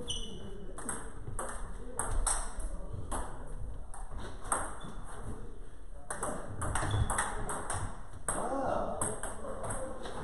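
Table tennis rally: the ball clicks sharply off the paddles and the table in a quick, uneven series, two or three clicks a second, with brief gaps between points.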